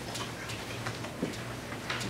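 Dry-erase marker writing on a whiteboard: a few light, irregular taps and short strokes of the tip on the board.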